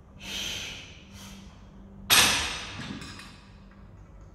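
A forceful breath out, then a shorter breath. About two seconds in comes a loud, sudden thud as the cable machine's weight stack drops back down when the handles are released, dying away over about a second.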